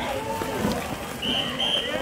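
Indistinct voices, then two short high-pitched beeps in quick succession in the second second.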